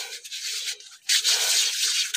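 Hands rubbing together to work in hand sanitiser. The rubbing pauses briefly about a second in, then comes back louder.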